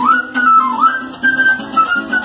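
A quena playing a lively melody, its notes sliding upward into one another, over a small guitar-like string instrument strummed in a steady rhythm.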